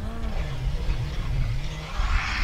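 Rally car engine running hard on approach, its note dipping and rising several times as the driver works the throttle.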